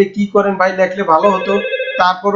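A man talking in Bengali, with a steady high tone sounding behind his voice for about half a second near the middle.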